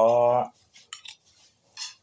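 A short held vocal sound from the eater at the start, then a few light clinks of a metal spoon and fork against a plate about a second in.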